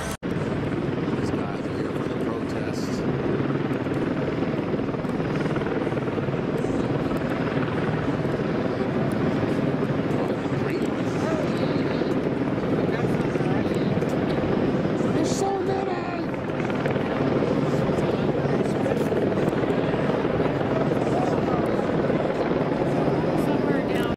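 Helicopter flying overhead: a steady, unbroken rotor and engine drone that eases slightly about two-thirds of the way through.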